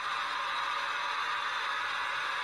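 A steady, even hiss with no speech, holding at the same level throughout.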